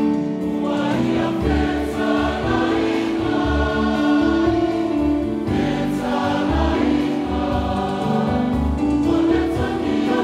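Church choir of women and men singing a hymn together, moving through long held notes.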